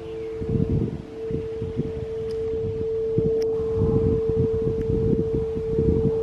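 A singing bowl holding one steady, pure ringing tone, with a second, lower tone dying away about a second in. Wind gusts rumble on the microphone.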